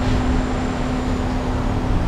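Yamaha LC135 single-cylinder four-stroke engine, bored out to 62 mm and freshly tuned, idling steadily on its stand with an even hum.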